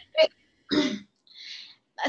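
A woman laughing in a few short bursts, ending in a breathy exhale.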